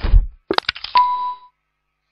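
Logo-intro sound effect of a lock being opened: a low thud, a quick run of sharp mechanical clicks, then a single ringing ding that fades out after about half a second.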